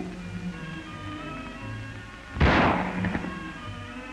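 A single rifle shot about two and a half seconds in, over background music: a loaded but uncocked .303 rifle going off accidentally when the end of its cocking piece strikes a projecting rock.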